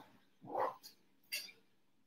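A short, soft vocal sound about half a second in, followed by a faint click.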